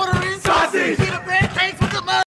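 A young man shouting a rap freestyle about sausage, with the crowd around him joining in, over a steady low beat of about two and a half knocks a second.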